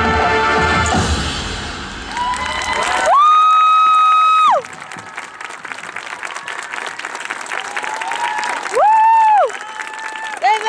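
A high school marching band's final held chord cuts off about a second in, followed by crowd applause and cheering. Loud, sustained whooping cheers from nearby spectators ring out about three seconds in and again near the end.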